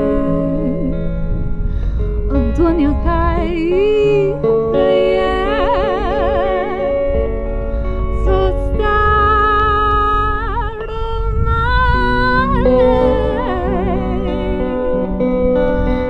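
A woman singing live with a wide vibrato on long held notes, accompanied by her own semi-hollow electric guitar.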